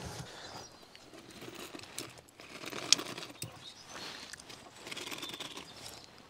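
Rustling and crinkling of a paper envelope and plastic bags being handled and opened, with a few small clicks, the sharpest about three seconds in.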